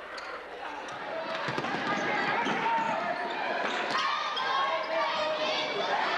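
A basketball bouncing on a hardwood gym floor during a game, with voices and crowd noise in the gym growing louder from about a second in.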